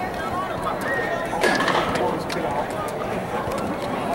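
Indistinct chatter of players and spectators, with a few brief knocks, in an indoor sports dome.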